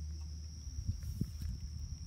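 A steady, high-pitched insect trill typical of crickets, with a few low knocks and rustles in the middle.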